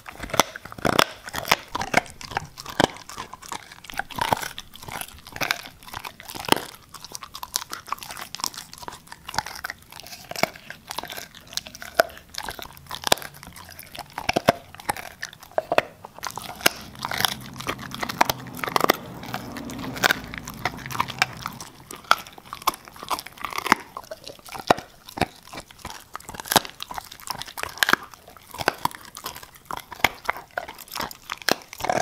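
Siberian husky chewing raw meat and bone, a steady run of sharp, irregular crunches and bites.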